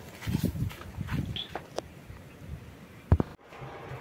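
A few soft footsteps and rustles, then a single sharp click about three seconds in.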